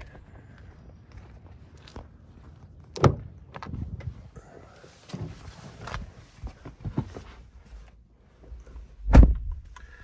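Car door opened with a sharp latch click about three seconds in, then shuffling and knocks as someone climbs into the driver's seat. The door shuts with a heavy thump near the end, the loudest sound.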